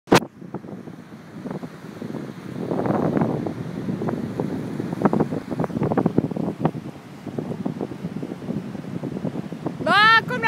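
Wind buffeting a phone microphone on a lakeshore or beach, irregular and crackling, with small waves washing on the shore. A shouted voice begins right at the end.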